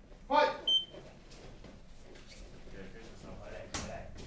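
A short shout about a third of a second in, then one brief, high electronic beep, the signal for the start of the round. Low background noise with faint voices follows, broken by a single sharp knock near the end.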